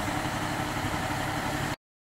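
Concrete mixer truck's diesel engine idling steadily. It cuts off abruptly shortly before the end.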